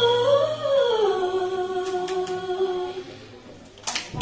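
A young female vocalist sings unaccompanied after the backing track drops out. She rises and then falls into one long held note that fades out about three seconds in, the closing note of a live ballad sung into a handheld microphone. Right at the end, a sudden burst of audience cheering and applause breaks out.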